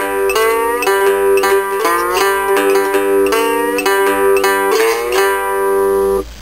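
Cigar box guitar playing a two-bar Delta blues rhythm riff on open strings and the third fret, plucked notes ringing over a steady drone, with several notes sliding up into pitch.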